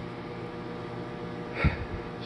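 Steady hum of a running kitchen appliance, with a short breath close to the microphone about a second and a half in.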